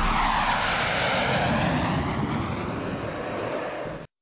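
Jet aircraft passing by: a loud rushing roar with a slow sweeping, phasing tone, fading gradually, then cut off abruptly at the end.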